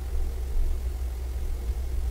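A steady low hum with no speech, running unchanged through the pause.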